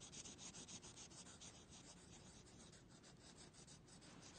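Faint scratchy rubbing of a felt-tip marker scribbling back and forth on a paper worksheet. The quick strokes come several a second and thin out over the second half.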